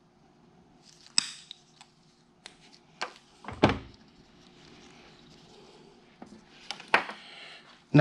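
Scattered clicks, taps and knocks of hand tools and small parts being picked up and set down, with one louder thump about three and a half seconds in.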